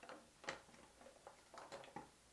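A few faint clicks and ticks as a plastic two-liter bottle is held down in a glass dish of ice water, the clearest about half a second in and a small cluster near the end.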